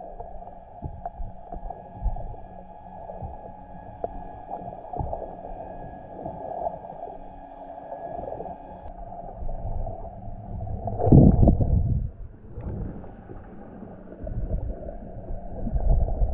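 Muffled underwater sound picked up by a submerged camera: a steady low rumble and gurgling of moving water, with a louder surge of rumble about eleven seconds in.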